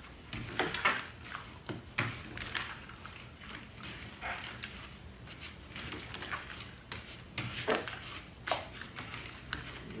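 Blue glue-and-liquid-starch slime being kneaded by hand in a bowl: irregular soft squishes and small clicks.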